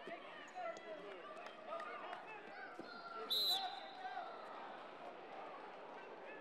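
Hubbub of many voices around a busy wrestling hall, with scattered thuds from bodies and feet on the mats. About three and a half seconds in, a short, loud referee's whistle blast stops the action after a scoring move.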